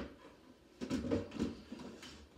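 A sharp click, then a short bout of knocking and shuffling about a second in: household objects being moved and handled.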